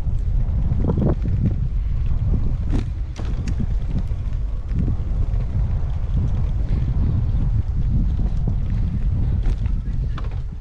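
Wind buffeting the microphone of a moving camera: a loud, steady low rumble, with a few faint clicks over it.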